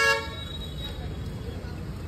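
A vehicle horn gives one short toot right at the start, followed by the steady hum of street traffic.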